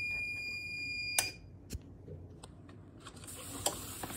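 A TransferCrafts heat press's timer alarm sounding one steady high tone at the end of its 60-second pressing cycle, cut off about a second in by a sharp click as the press is opened. A soft knock and light paper handling follow.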